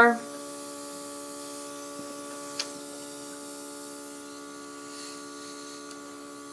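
Airbrush compressor running with a steady hum while the airbrush gun is used, with one short click about two and a half seconds in.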